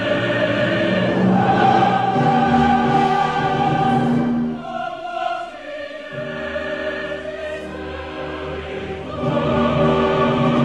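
Choir and orchestra in a late-Romantic choral work, singing long held chords; the sound thins and drops back about halfway through, then swells again near the end. Heard through the dull sound of an off-air radio recording.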